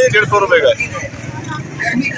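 Men talking at close range, a short phrase at the start and more speech near the end, over a steady outdoor background noise.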